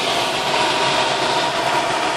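Steady rush of air over the canopy of a glider in flight, with a faint steady tone beneath it.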